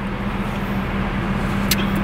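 Steady hum of a car running, heard from inside the cabin, with a brief click about a second and a half in.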